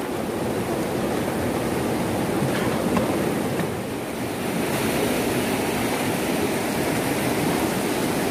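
River water rushing over rocks in the white-water rapids just below a dam's spillway gates: a steady, even rush.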